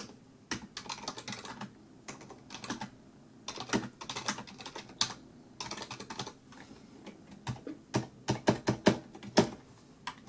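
Typing on a computer keyboard: quick runs of keystrokes with short pauses, and a few louder, separate key presses near the end.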